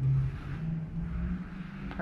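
A low, steady motor hum, like a vehicle engine running, that rises a little in pitch about half a second in. A single click comes just before the end.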